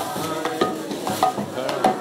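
Kirtan music: a hand drum and cymbals strike a steady beat about twice a second, with voices singing along.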